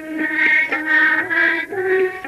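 A group of young girls singing a Hindu devotional hymn (stuti) in unison, in long held notes.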